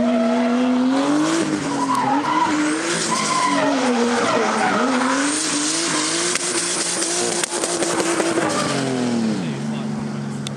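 A drift car's engine held at high revs, its pitch rising and falling as the throttle is worked, with the rear tyres screeching and smoking through the slide. Near the end the revs drop away as the car comes off the throttle.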